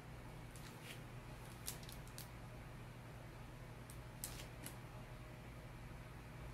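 Faint scratches and ticks of a fine-tipped Micron pen drawing line work on photo paper, a handful of short sounds in small clusters, over a steady low room hum.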